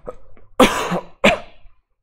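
A person coughing twice: a loud cough about half a second in, then a shorter one just after.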